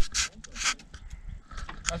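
Chevrolet flatbed pickup's engine running at low revs as the truck creeps forward, with a few short rustling noises close to the microphone.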